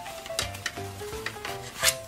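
Fabric rustling and rubbing as a small sewn doll's bodice is worked right side out by hand, with a sharper rustle near the end. Soft background music plays under it.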